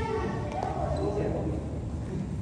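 Badminton play in an indoor hall: racket hits on the shuttlecock and players' feet thudding on the court, with people talking.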